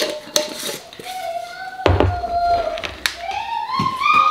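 Light kitchen handling: a few sharp clicks and knocks as a glass jar and its lid and a stick blender are picked up and set down, with a dull bump about two seconds in. A young child's high-pitched voice calls out in drawn-out sounds over it.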